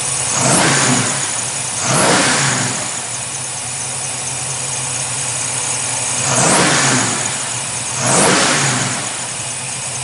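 350 cubic-inch small-block Chevrolet V8 with FiTech fuel injection and dual Dynomax mufflers idling, its throttle blipped four times in two pairs, one pair in the first couple of seconds and another about six seconds in, each rev rising and falling straight back to idle.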